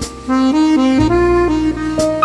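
Jazz quartet music led by a button accordion playing a melody in short stepped notes. A cymbal-like hit sounds at the start, and low bass notes come in about a second in.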